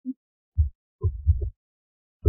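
A short run of soft, low thuds, four or five in under two seconds, with silence between them.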